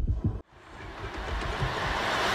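Trailer-style sound design: a deep boom dies away and cuts off abruptly about half a second in. A rising whoosh of noise then builds steadily.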